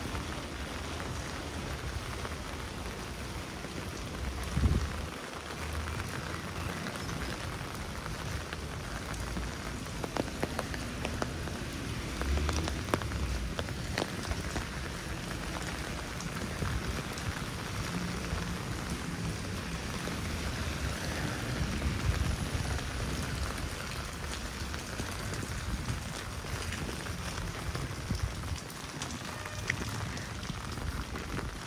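Steady rain falling on wet paving, an even hiss with scattered drop clicks. There is a brief low thump about four and a half seconds in.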